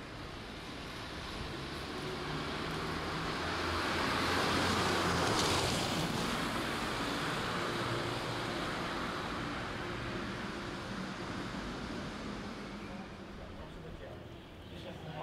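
Street traffic: a motor vehicle passing by, its engine and road noise growing louder to a peak about five seconds in and then slowly fading away.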